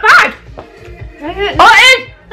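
Women's short wordless exclamations of disgust, a loud cry at the start and another rising in pitch in the second half, as a foul-tasting jelly bean is chewed.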